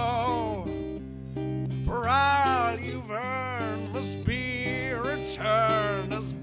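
A male voice singing long, wavering held notes in a dark folk-blues song over acoustic guitar, with steady low bass notes ringing underneath. There are four or five sung phrases, each about half a second to a second long.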